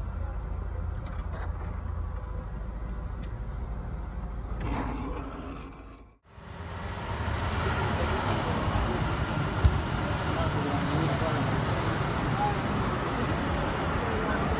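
Low steady rumble inside a car cabin. After a sudden break, outdoor street ambience with traffic noise takes over, with one sharp click a few seconds later.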